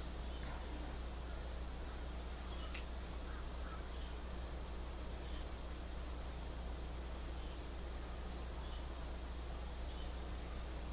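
A small bird chirping, each call a short high trill of three or four quick notes, repeated about seven times at uneven intervals of one to two seconds, over a steady low hum.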